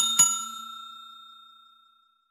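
A bell 'ding' sound effect for pressing a notification bell: two quick strikes about a quarter second apart, then a high ringing tone that fades away over nearly two seconds.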